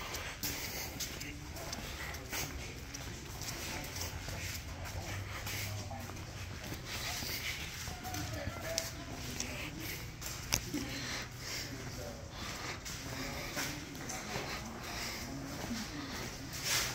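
Footsteps walking on a concrete shop floor with scattered small knocks, under a steady low hum and faint, indistinct voices in the background.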